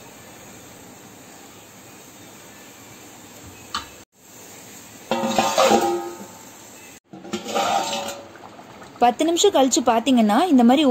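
A stainless-steel plate set over a clay cooking pot as a lid, clattering and ringing for a second or so about five seconds in, with a shorter clatter just after seven seconds. A faint steady hiss fills the first few seconds.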